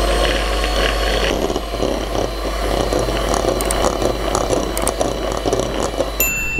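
Electric hand mixer running steadily with its twin whisk beaters, mixing flour and baking powder into a batter of egg yolks, sugar and milk. A few short clicks come in the middle.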